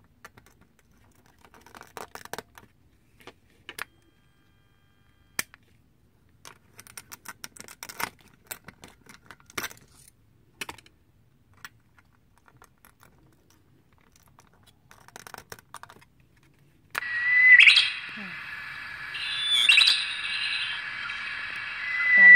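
Small clicks and taps as a memory chip is handled and pressed into the socket of a Hong In KS-61 voice synthesizer board. About 17 seconds in, the board's small speaker starts playing its stored sound: rising, chirp-like calls about every two and a half seconds over a steady hiss.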